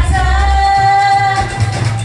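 Female vocalist singing chutney music live through a PA, holding one long note for about a second and a half over amplified backing music with a heavy bass line.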